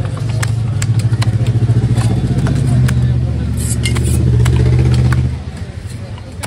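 A motor vehicle engine running steadily close by, with a fast, even pulse, dropping away about five seconds in. Sharp knocks of a heavy knife on a wooden chopping block come at irregular intervals over it.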